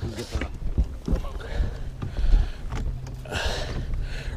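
Scattered knocks and rustles of fishing gear being handled on an aluminum boat deck, over a low steady hum, with a brief hiss about three and a half seconds in.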